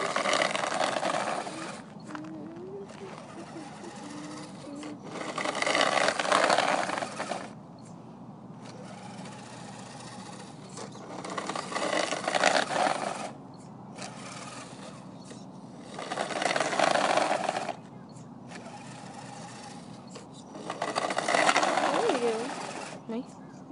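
Trailfinder 2 scale RC truck's electric motor and drivetrain whirring in repeated bursts as it pushes its plow, about every five seconds, with a quieter steady whir between the pushes.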